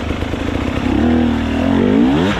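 Off-road dirt bike engine revving as the bike is ridden up over wet rocks in a stream bed. The revs rise from about a second in.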